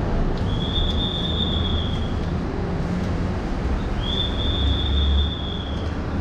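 A steady low rumble, like heavy traffic, with two long high-pitched squeals of about two seconds each: the first starts about half a second in, the second about four seconds in.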